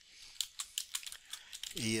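Typing on a computer keyboard: a quick run of light key clicks, irregularly spaced.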